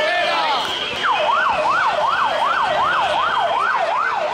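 A siren wailing in fast up-and-down sweeps, about two a second, starting about a second in, after a brief moment of voices.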